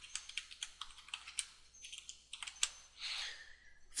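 Computer keyboard typing: an uneven run of quick key clicks as a line of code is entered.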